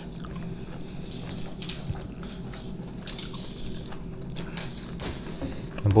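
Close-miked chewing of a burger, with scattered soft mouth clicks, over a faint steady low hum.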